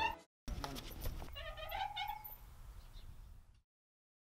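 Playground swing creaking as someone sits rocking on it: a few clinks from the chains, then a couple of short, high squeaks that glide in pitch. The sound cuts off shortly before the end.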